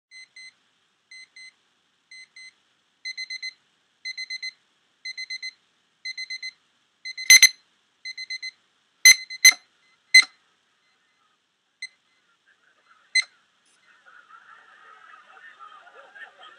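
Electronic sonar-style beeps from an ultrasonic distance sensor's Max MSP patch, in short groups about once a second. Each group grows from two beeps to four or five, and the beeps get louder as a person comes closer to the sensor. Several loud, sharp clicks fall among and after the last groups, and the beeping stops about halfway through.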